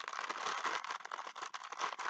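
Thin plastic bag crinkling continuously as hands dig in it to pull out small pieces.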